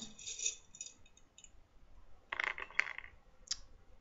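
Metal T-pins clicking and scraping as they are pulled out of and pushed back into a foam blocking mat: a cluster of light clicks and scrapes about two and a half seconds in, then a single sharp click.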